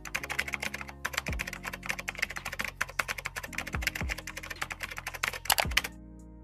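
Computer keyboard typing sound effect: a fast, continuous run of key clicks that stops abruptly at the end, with a few low thumps underneath.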